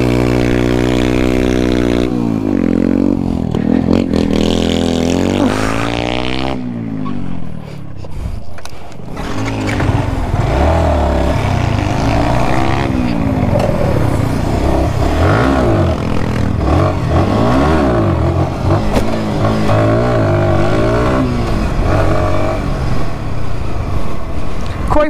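Sport motorcycle engine held at steady revs for a couple of seconds, then revved up and down again and again, its pitch rising and falling over and over.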